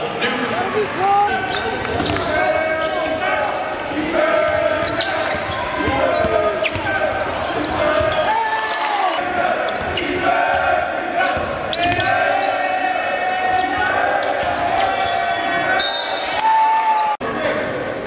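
Basketball game sound in a gymnasium: a basketball bouncing on the hardwood court amid many spectators' voices and shouts, echoing in the large hall. The sound drops out briefly near the end at an edit.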